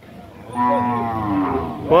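A bovine mooing once: a single long call of about a second and a half that slides slowly down in pitch.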